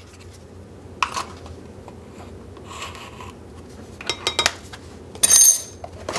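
Measuring spoon clicking and scraping against a tub of baking powder and a glass measuring cup of flour as a teaspoon is scooped and tipped in: a click about a second in, a faint scrape, then a quick run of clicks. A short, sharp, bright rustle a little after five seconds is the loudest sound.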